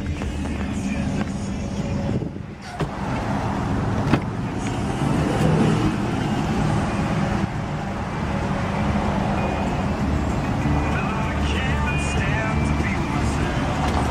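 2004 Cadillac Escalade's V8 idling steadily, with a sharp knock about four seconds in.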